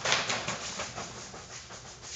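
Plastic sheeting rustling and crackling as it is brushed past, with a louder crackle just after the start that then fades to a lighter rustle.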